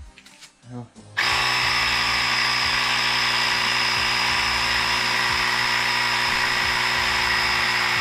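A Carsun cordless battery air compressor switches on abruptly about a second in and runs steadily, pumping up a bicycle tyre: a motor hum with a high steady whine over it.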